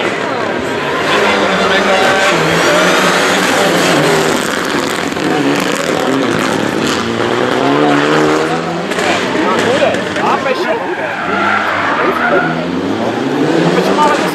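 Mitsubishi Lancer Evolution IX R4 rally car's turbocharged four-cylinder engine revving hard, its pitch rising and falling through repeated gear changes. A fresh rise in revs comes near the end.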